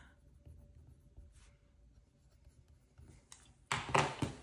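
Pen writing faintly on a paper budget sheet in a planner binder. Near the end comes a much louder rustle as the binder's pages are handled and turned.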